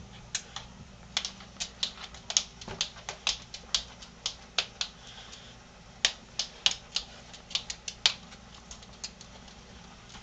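Tamanduas' long front claws clicking and tapping on a hard wooden floor as they walk and scuffle, in irregular sharp clicks a few a second that thin out near the end.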